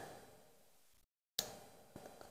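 Near silence: faint room tone, broken by a short stretch of dead digital silence at an edit, then a single faint click and a softer tick near the end.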